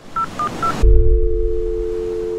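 Channel logo intro sound effect: three short, high electronic beeps in quick succession, then, just under a second in, a loud low hit that leaves a steady low two-note electronic tone.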